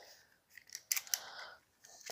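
A few quick light clicks from a utility knife as its blade slider is worked, readying the blade for cutting.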